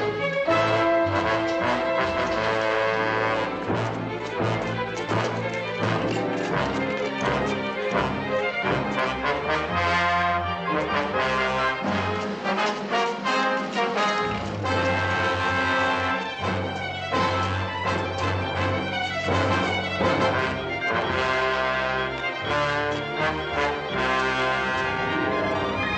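Dramatic orchestral film score with brass, loud and busy, punctuated by frequent sharp percussive hits.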